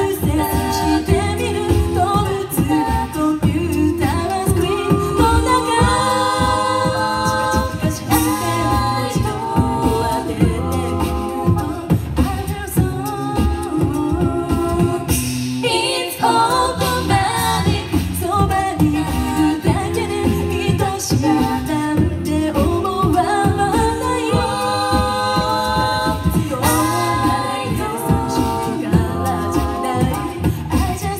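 A mixed a cappella group of women's and men's voices singing a pop song live through microphones. Close vocal harmonies ride over a low sung bass line, with a steady percussive beat underneath throughout.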